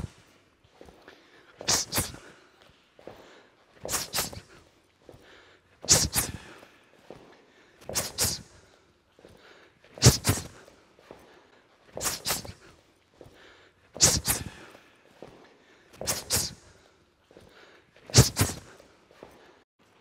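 Step-in double-punch drill: a sharp pair of sounds from the feet and punches about every two seconds, nine times, with quiet between.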